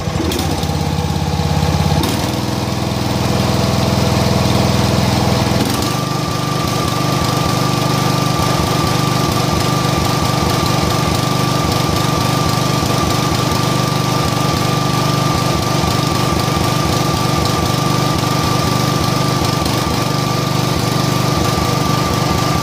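John Deere riding mower engine being throttled up in steps over the first six seconds, then running at high speed with a steady whine and an uneven low beat. It is running rough, which the owner later traced to an air-cleaner foam he had oiled.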